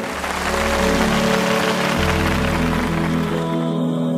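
Background music with sustained chords over deep bass notes that change about two seconds in, and a hissing wash over the first three seconds.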